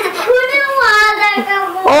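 A high voice singing or vocalising in long, drawn-out sing-song notes, heard from a play-session video played over the hall's loudspeakers.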